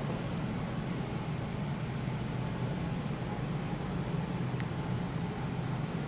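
Steady low hum of a building's air-conditioning and ventilation, even throughout, with a single faint tick about four and a half seconds in.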